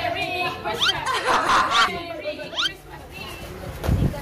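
Group chatter: several voices talking and calling out over each other around a dinner table.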